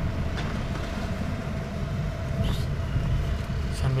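Car interior noise: a steady low engine and road rumble heard from inside a car rolling slowly, with a faint steady whine that fades about two-thirds of the way through.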